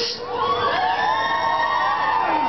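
Concert crowd shouting back in a call-and-response, many voices overlapping, swelling about half a second in.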